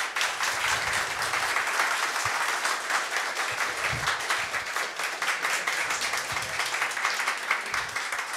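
Audience applauding: a steady stretch of many hands clapping.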